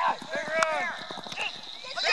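Spectators shouting short calls of encouragement, several voices overlapping, with a few sharp knocks among them.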